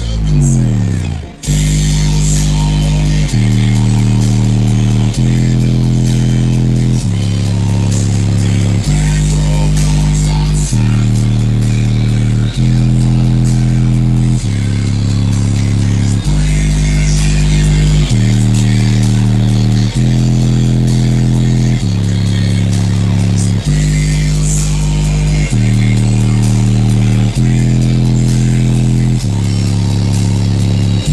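Bass-heavy electronic music played loud through a truck's aftermarket subwoofer system. It opens with a falling bass sweep, then deep bass notes change about every two seconds.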